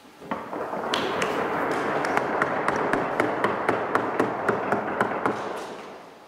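Small audience applauding: the clapping starts just after the start, swells within the first second with single louder claps standing out, and fades out near the end.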